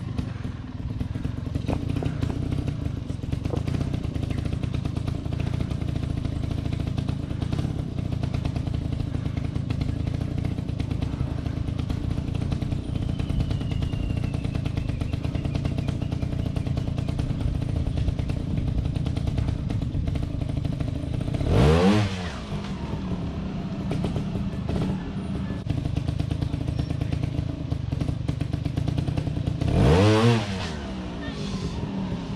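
Trials motorcycle engine running at low revs as the bike is worked slowly up a rocky climb, with two sharp throttle blips, the loudest moments, about 22 seconds in and again at the very end.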